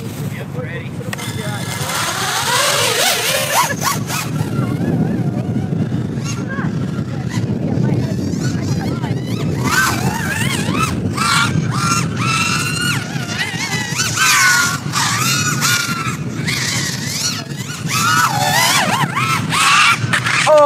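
A 6S, low-kv 5-inch FPV racing quadcopter's motors and propellers whining through a fast lap, the pitch rising and falling with the throttle.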